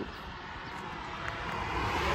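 A passing motor vehicle's engine and road noise, a steady rush that grows gradually louder as it approaches.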